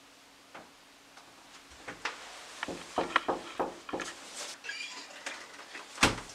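A faint steady hum, then from about two seconds in a quick run of light knocks and clicks, loudest around three seconds in, fading out near the end.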